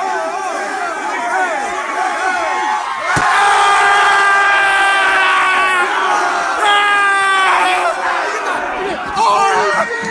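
A room full of football players talking over one another, then a single sharp crack about three seconds in, followed by a loud group yell held for a few seconds and a second burst of shouting a little later.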